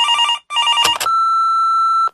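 A telephone ringing twice in quick succession, two short trills, then a click as the line picks up and a steady electronic beep held for about a second: an answering machine cutting in.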